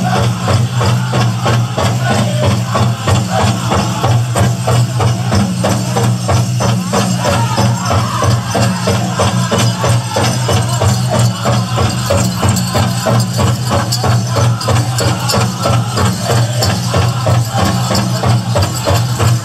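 Powwow drum group: a big drum struck in a steady, even beat with voices singing over it, and the metal cones of jingle dresses rattling as the dancers move.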